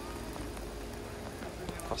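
Steady hiss of rain falling on wet pavement, with a faint steady hum underneath.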